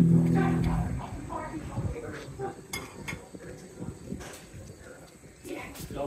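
Knife and fork clinking and scraping on a ceramic plate, in short scattered clicks, with voices talking nearby. A held chord from a live band dies away about a second in.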